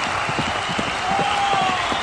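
Racehorses' hooves pounding the track in a fast, irregular stream of thuds over the steady noise of a cheering crowd, with a short wavering high tone about halfway.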